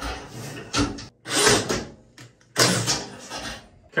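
Drain-cleaning cable being fed through a bathtub's overflow opening into the drain pipe, scraping and rattling in several short bursts.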